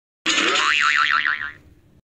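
A cartoon "boing" sound effect: a springy tone that wobbles rapidly up and down in pitch, starting about a quarter second in and fading out after about a second.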